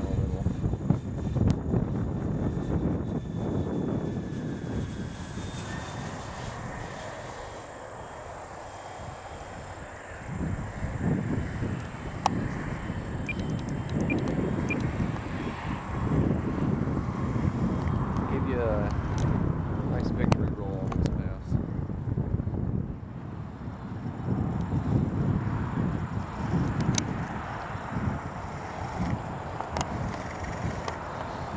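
Twin electric motors and propellers of a FlightLineRC F7F-3 Tigercat radio-controlled model running at about two-thirds to three-quarters throttle on a straight, level pass. The sound dips a few seconds in and swells again from about ten seconds in as the model passes.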